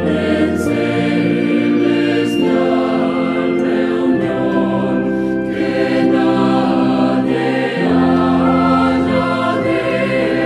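A choir singing a slow hymn in Spanish, the voices holding long chords that change every second or two.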